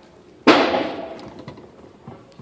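A single sudden loud bang about half a second in, dying away over about a second.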